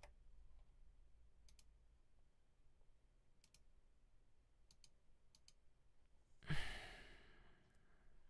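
A few faint clicks, mostly in quick pairs, then a person sighing out loud about six and a half seconds in, the breath fading over about a second.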